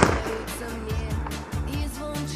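Music with a steady beat, over which a single sharp firework bang sounds right at the start and its echo fades within about half a second.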